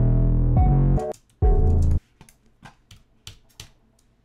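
A hip-hop beat playing back: a deep 808 bass under a melodic sample for about two seconds, broken by a brief gap near one second. The bass and melody then drop out, leaving only faint, quick high ticks.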